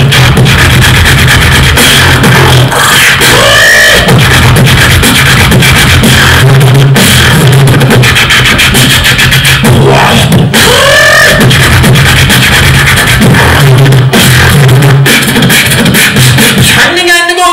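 Amplified beatboxing into a cupped handheld microphone: a continuous hummed bass line under sharp vocal kick and snare hits. Swooping vocal sweeps that rise and fall come about three seconds in and again about ten seconds in.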